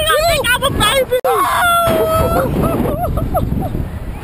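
Two slingshot-ride riders screaming and laughing in high-pitched cries without words, short yelps then one longer held shriek, over wind rushing across the microphone.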